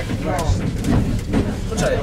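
People talking inside a Jelcz 120M city bus, over the steady low rumble of its diesel engine running.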